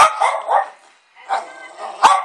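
Dogs barking during rough play: several short, sharp barks in quick succession.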